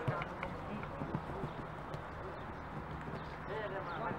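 Background sound of a seven-a-side football game on artificial turf: faint shouts from players, with a few scattered thuds from ball kicks and running feet.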